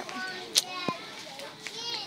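Young girls' voices giggling and chattering, with a brief sharp click about halfway through and a short rising squeal near the end.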